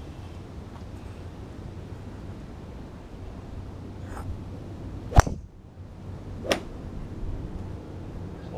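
Driver striking a golf ball off a rubber tee on a driving-range mat: one sharp crack about five seconds in, the loudest sound. A fainter crack follows about a second later.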